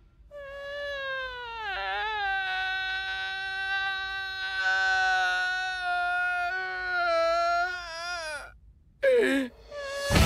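A man's long, high-pitched crying wail. It slides down at first, holds for several seconds with a slight waver, and breaks off about eight and a half seconds in, followed by a short falling whimper.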